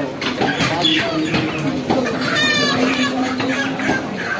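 Busy market background with people's voices and a short, high animal call about two and a half seconds in.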